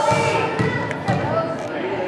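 Basketball being dribbled on a gym floor, about two bounces a second, with spectators' voices behind it.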